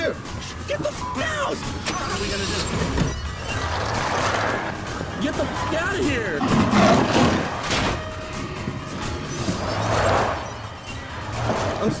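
Frantic shouting inside a car over tense background music, with a car engine running underneath.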